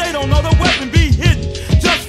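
Hip-hop track: a male rapper delivering a verse over a beat of heavy kick drum and snare hits.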